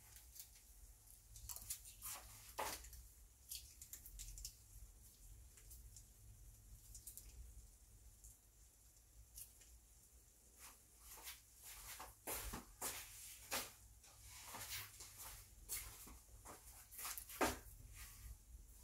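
Ketchup being squeezed from a squeeze bottle onto toast in a frying pan: faint scattered squirts and clicks, more frequent in the second half.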